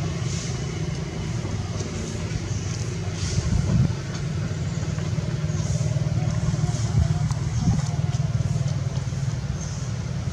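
A steady low motor hum, with a louder swell a few seconds in and a couple of brief peaks later.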